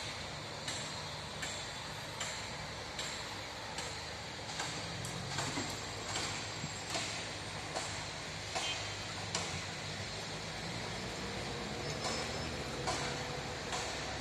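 Footsteps of someone walking on a paved path, about one step every three-quarters of a second, over a steady low rumble of city traffic and construction machinery.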